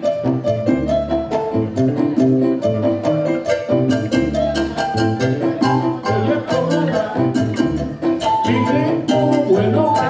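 Latin jazz band playing live: low bass notes and chords under a steady rhythm of sharp percussive hits.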